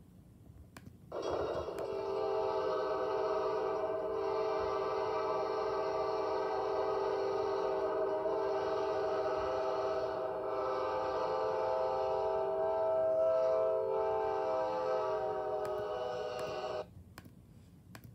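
Amtrak locomotive horn sounding one long, steady multi-note chord of about fifteen seconds, starting about a second in and cutting off abruptly, played back through a laptop speaker.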